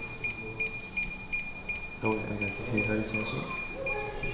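A high electronic beep that pulses about three times a second, from the folding quadcopter drone being powered up and connected to its controller. Low voices murmur in the second half.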